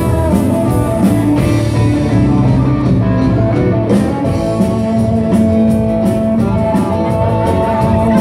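Live amplified rock band playing an instrumental passage, led by electric guitars over bass, with long held guitar notes.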